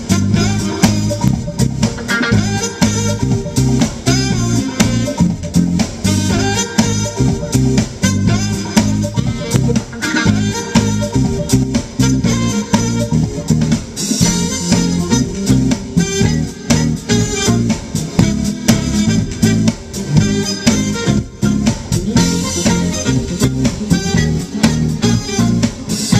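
Live smooth-jazz band playing: alto saxophone lead over electric bass, electric guitar and a drum kit, with a steady beat.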